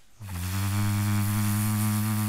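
A steady, low electronic buzzer tone with many overtones, coming in about a quarter second in and holding level. It is a studio sound effect marking that a listener's suggestion has been picked.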